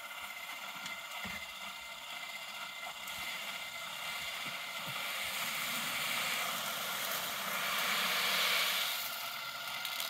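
Granular fertiliser poured from a plastic bin into a DJI Agras T40's spreader hopper: a rising rush of granules about halfway through, loudest near the end, then tailing off. Under it runs a steady whine from the spreader, left running so the calibration is not interrupted.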